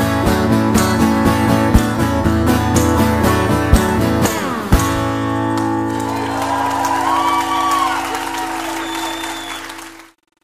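Live acoustic guitar strummed in rhythm with a hand drum beating time, ending on a final chord about five seconds in that is left to ring. Audience applause rises under the ringing chord, and everything fades out at the end.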